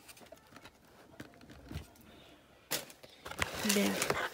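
Cellophane-wrapped cardboard cosmetic boxes being handled and shifted on a table: faint scattered clicks, then a rustling crinkle of plastic wrap starting about two-thirds of the way in. A short hummed vocal sound comes near the end.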